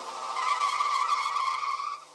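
A single sustained high squealing tone, growing steadily louder for about two seconds and then cutting off suddenly once the song's music has stopped.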